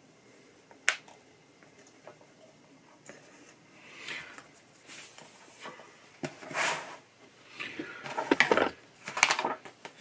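Workbench handling noises: one sharp click about a second in, then irregular rustling and light clatter of small hard objects from about four seconds on, as the removed melodeon keys and tools are moved about on the bench.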